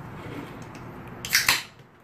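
A diet root beer can snapped open: a short, sharp two-part hiss about one and a half seconds in.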